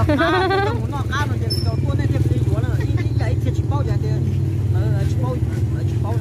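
People talking, a man's voice loudest in the first second, over a steady low engine hum.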